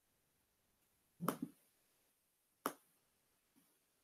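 Sharp clicks from someone working a computer: a quick pair about a second in, then a single click about a second and a half later, with faint room tone between.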